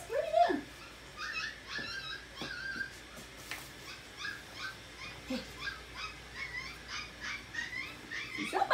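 Seven-week-old puppies whimpering and yipping: one louder yelp at the start, then a run of short, high squeaks, a few each second.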